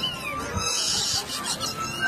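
A high-pitched squeal that falls in pitch as it starts, over street noise.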